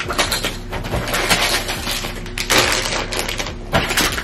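Rustling and clicking of items being handled and packed into a suitcase, with a steady run of small knocks and a louder rustling stretch in the middle.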